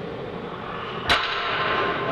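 A loaded barbell, about 290 lb, with iron plates, hits the rubber gym floor once, about a second in, as it is lowered between reps of bent-over rows. It gives a sharp clank with a brief ring, over a steady background hiss.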